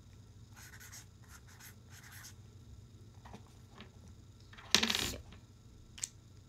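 Felt-tip marker scratching across a paper memo pad in a series of short strokes, mostly in the first couple of seconds and more faintly around three seconds in. Near the end comes a sudden, much louder noise of about half a second, the pad or paper being handled.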